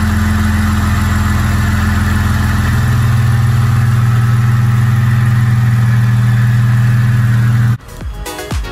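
Jeep Wrangler JKU's 3.6 L V6 engine running steadily at idle, its pitch stepping up about three seconds in.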